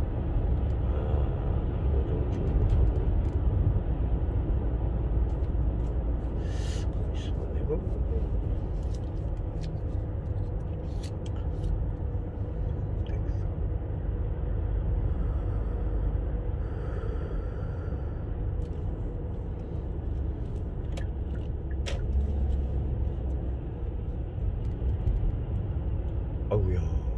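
Steady low road and engine rumble inside a moving car's cabin, with a few faint clicks.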